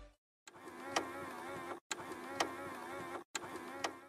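A short edited sound effect looped three times. Each pass lasts about a second and a half and holds a warbling tone and one sharp click, with a brief drop-out between passes. It starts just after the intro music stops.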